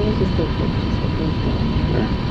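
Steady low rumble of background noise in a large theater auditorium, with faint voices under it.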